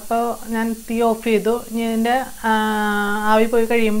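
Speech only: a voice talking, with one word drawn out and held for about a second in the middle.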